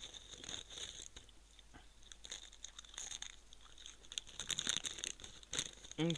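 A person chewing potato crisps with his mouth, making repeated soft crunches that grow louder and more frequent near the end.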